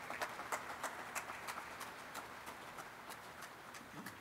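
Applause from a small audience: many separate hand claps that slowly die away.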